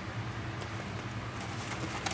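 Soft handling sounds from a pair of leather sneakers being turned over in the hands, with a few light ticks and taps in the second half, over a steady low hum.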